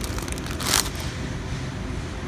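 Steady rush of a refrigerated room's air handling, with a short crackle of a plastic salad-kit bag being set into a shopping cart about three quarters of a second in.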